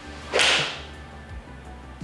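Golf iron swung through and striking a ball off a hitting mat: one sharp strike about a third of a second in, fading over about half a second.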